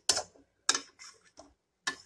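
A metal spatula knocking and scraping against a metal kadai while stirring thick cooked gongura leaves, about five sharp clacks in two seconds.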